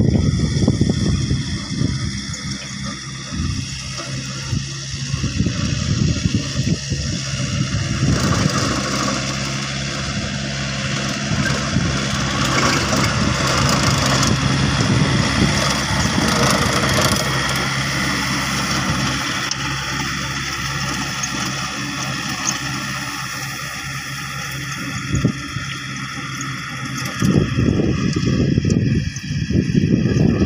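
Yanmar diesel tractor engine running steadily under load while driving a rotary tiller through grassy soil, with the tiller churning the ground. It is loudest as the tractor passes close about halfway through and drops as it moves away, with a few low rumbling bursts near the end.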